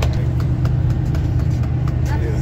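Steady low drone of a Sunlong coach's engine and running gear, heard from inside the passenger cabin, with a few faint clicks.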